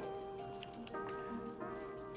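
Soft background music of held chords, moving to a new chord about a second in.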